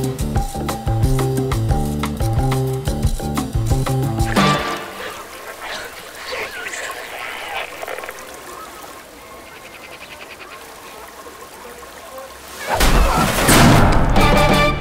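Film-trailer music with a heavy, rhythmic bass beat for about the first four seconds, then the rush of water down a stainless-steel water slide with brief vocal sounds from the rider. Near the end a sudden loud burst of noise cuts in.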